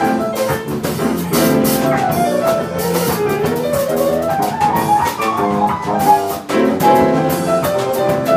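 Live jazz band playing: grand piano and electric bass over a drum kit, with regular drum and cymbal strokes keeping the beat and melodic runs winding up and down.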